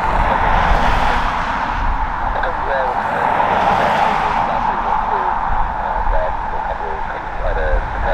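Airbus A320 jet engines on landing approach, a steady rushing noise with a held tone, under gusty storm wind buffeting the microphone.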